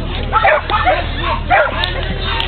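Dogs yapping in several short, high barks, with people talking in the background.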